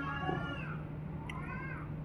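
A cat meowing faintly, two short calls that rise and fall in pitch, over a steady low hum.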